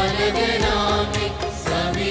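A choir of men and women singing a Christian devotional song, accompanied by an electronic keyboard.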